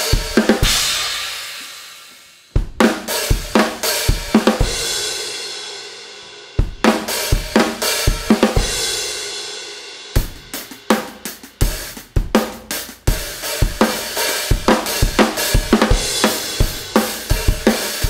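Acoustic drum kit played with sticks: kick, snare and hi-hat strokes in short phrases. Crash cymbals are struck and left to ring and fade near the start, at about two and a half seconds and at about six and a half seconds, and a busier run of strokes follows from about ten seconds in.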